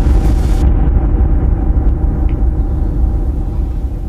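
A loud, deep rumble that slowly fades. A hiss over it stops short about two-thirds of a second in.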